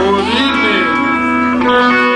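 Electric guitar played through an amplifier between songs: a note slides in pitch about half a second in, then several notes are left ringing.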